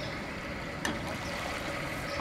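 Outdoor ambience of calm lake water at a gravel shore: a steady, even wash of noise with small water sounds, and one sharp click about a second in.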